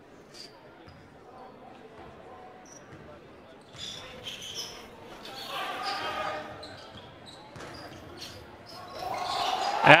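A basketball being dribbled on a hardwood gym floor during live play, with short shouts on court. The play sounds pick up about four seconds in, over a quiet hall murmur.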